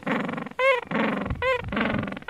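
A dog yipping in short calls that rise and fall in pitch, about one every three-quarters of a second, with drawn-out whining between them.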